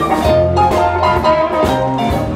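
Live electric blues band playing an instrumental passage: sustained lead notes over electric guitar, electric bass and a drum kit keeping a steady beat.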